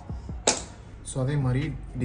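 A sudden short swish about half a second in that fades quickly, followed by a man talking.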